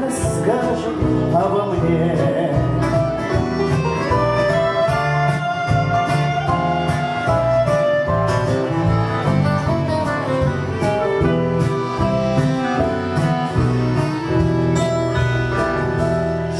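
Instrumental break by a small live band: clarinet, bayan (button accordion), keyboard, bass guitar, drums and strummed acoustic guitar playing together over a steady beat.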